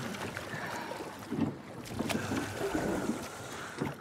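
A wooden rowboat being rowed on calm water: oar blades dipping and splashing, with a couple of sharp wooden knocks from the oars.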